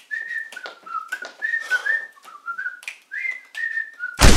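A person whistling a tune, one clear note at a time stepping between pitches, with sharp clicks scattered through it.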